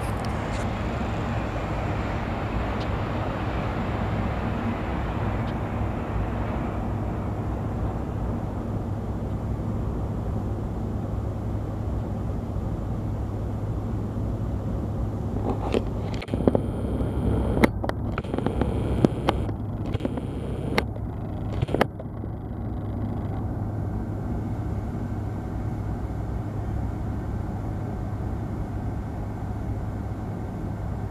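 Distant doublestack freight train rolling across a steel truss bridge: a steady low rumble, fuller in the first few seconds. About halfway through, a short run of sharp clicks and knocks.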